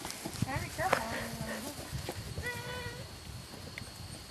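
German shepherd puppies playing at close range: short high-pitched whimpers about half a second and a second in, and a steadier whine near three seconds in, over rustling and bumping noise.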